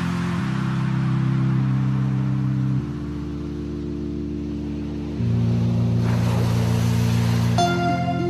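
Background music: slow, held synth-pad chords that change about every two and a half seconds.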